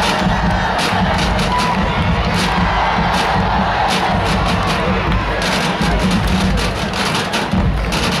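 Stadium crowd cheering and shouting, with marching band music underneath.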